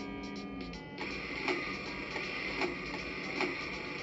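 Electronic toy laptop speaker playing a short beeping tune that ends about a second in, then a buzzy, machine-like sound effect with a knock about every second.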